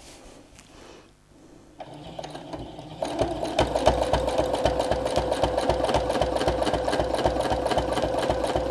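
Domestic sewing machine with a free motion foot, feed dogs dropped for free motion quilting, starting to stitch about two seconds in, picking up speed, then running steadily with a rapid, even needle rhythm.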